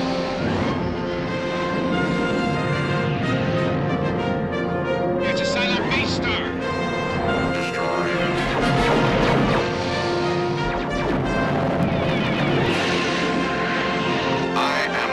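Orchestral film score with held brass and string chords, over space-battle sound effects with booms.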